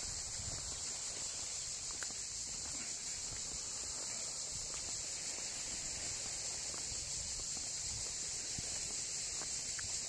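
A steady high-pitched drone of cicadas chirring in the summer trees, with a few faint footsteps on the road.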